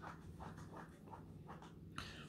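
Very quiet room tone with a steady low hum and a few faint rustles, and a small click at the very end.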